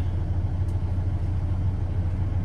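Diesel engine of a 2019 Hamm DV+ 70i VS-OS tandem roller idling with a steady low hum, heard from inside the cab. A light click comes under a second in as a lighting switch on the dash console is pressed.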